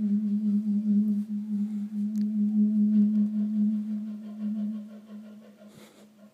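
Clarinet holding one long low note with a slight vibrato, slowly dying away over the last few seconds.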